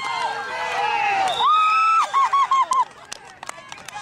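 Sideline spectators shouting and cheering a running child on, several voices overlapping, with one long drawn-out yell about a second and a half in followed by a few quick repeated shouts. The cheering dies down near the end, leaving scattered clicks.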